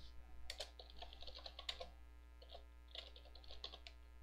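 Typing on a computer keyboard: two quick runs of keystrokes with a short pause between them, faint.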